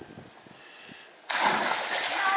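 A person jumping into a swimming pool: a sudden splash about a second in as the body hits the water, followed by churning water.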